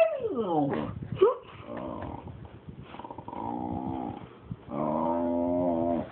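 Pet dog making drawn-out growling moans that slide up and down in pitch: one in the first second or so, a quieter one in the middle, and a longer, steadier one near the end. It is the dog's 'talking' noise, which the owner takes for jealousy at a cat being petted beside it.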